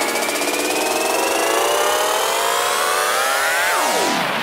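Electronic dance-track breakdown with no beat: a layered synthesizer riser, several tones sweeping slowly upward together like a siren, then sliding sharply down near the end.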